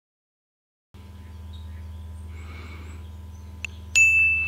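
Silent for the first second, then a steady low electrical hum with faint hiss. There is a faint click near the end, and a click and a high beep start just as it ends.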